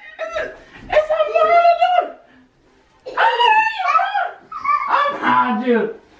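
Wordless, high-pitched playful voice sounds, drawn-out calls that glide up and down, with a short pause in the middle. A lower voice follows near the end.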